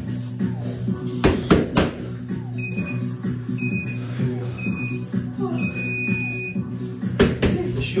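Background music with a workout interval timer's countdown: three short beeps about a second apart, then one long beep signalling the start of the next round. Two sharp knocks sound just over a second in.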